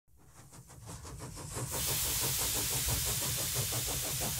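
Stuart model beam engine running, fading in with a quick, even exhaust beat, joined by a steady hiss from just under two seconds in.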